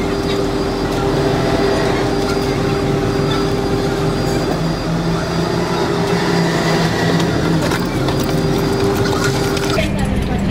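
Steady mechanical hum of a car idling, heard from inside the cabin.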